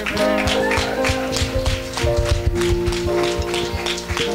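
Hands clapping in quick, irregular claps over a keyboard holding sustained chords.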